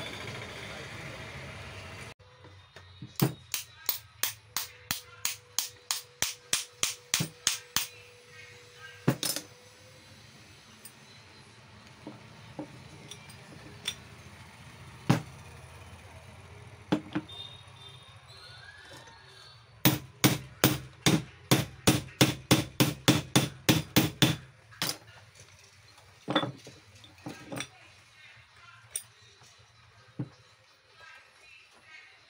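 Rapid hammer taps on metal during a bearing change on a wood router's motor, in two runs of a dozen or more strikes at about three a second, with a few single knocks between them.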